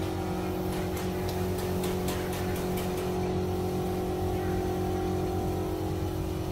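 A steady low mechanical hum, like a motor running, holding the same pitch throughout, with a few faint clicks in the first half.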